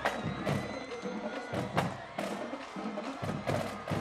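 Percussion music with sharp drum and rim hits at an uneven rhythm, over crowd noise, typical of a stadium drumline.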